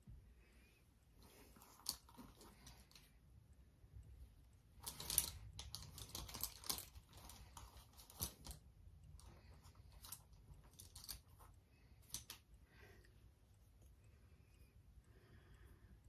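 Faint clicking and rustling of makeup products being handled and set down, busiest about five to seven seconds in.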